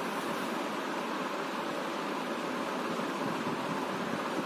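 Steady, even background hiss of room noise, of the kind a fan or air conditioner makes, with no distinct sounds standing out.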